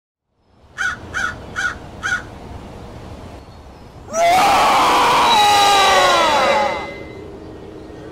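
Sound track of a sitting scarecrow Halloween animatronic: four quick crow caws, then a loud drawn-out scream lasting about two and a half seconds that falls in pitch toward its end.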